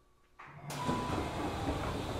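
Doors of a Tokyu 3000 series commuter train opening at a station stop: after near quiet, a sudden rush of noise about half a second in as the doors slide open and the platform sound comes in.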